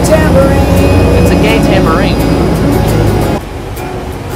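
A man's voice, sung or half-sung with wavering pitch, over music and a steady low vehicle rumble. The whole mix drops abruptly about three and a half seconds in.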